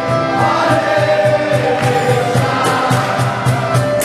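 Kirtan: a group of voices chanting together, with percussion keeping a quick, steady beat of about five strokes a second.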